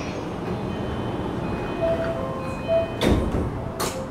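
Inside an E235-series commuter train car: a steady rumble of car noise, with a few short, faint melodic tones in the middle and two sharp knocks, the first about three seconds in and the second near the end.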